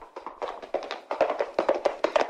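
Hoofbeats of a galloping horse: a quick, irregular run of sharp knocks that grows louder.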